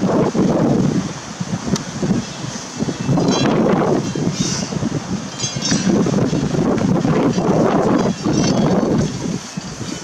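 Loud, irregular rustling and buffeting right at the microphone, coming in uneven surges: spruce branches brushing against the camera, with wind on the microphone.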